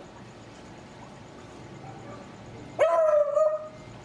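A dog gives one loud, drawn-out bark about three seconds in, rising briefly and then held at a steady pitch for nearly a second.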